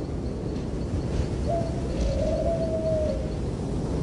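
About a second and a half in, a bird calls once: one drawn-out note lasting nearly two seconds, dipping in pitch partway through. Under it runs a steady low rumble.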